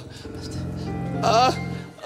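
A man's mock wailing moan, one short rising and wavering cry about a second in, over a held low chord of background music.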